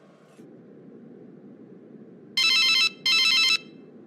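Telephone ringing twice, each ring a trilling electronic tone about half a second long, over a faint steady hiss.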